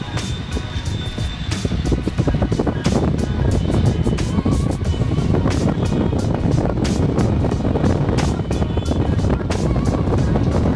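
Music with a steady beat and heavy bass.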